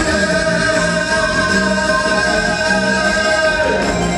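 Male singer holding one long note of a Tatar folk-style song over live band accompaniment with a steady beat; the note slides down and ends shortly before the close.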